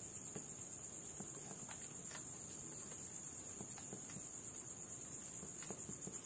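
Night insects trilling steadily at a high pitch, with sparse soft crackles and pops from a wood fire's embers.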